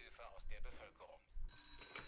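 Quiet voice of a news report from the TV episode, then a telephone starts ringing near the end with a steady high ring.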